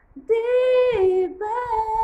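A woman singing a Tagalog love ballad, holding long notes after a brief breath: the first slides down about a second in, and a second held note follows just after.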